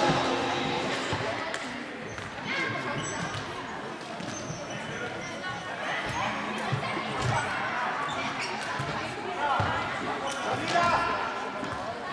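Football being kicked and bouncing on a sports-hall floor, a handful of thuds echoing in the large hall, over the chatter and calls of children and spectators.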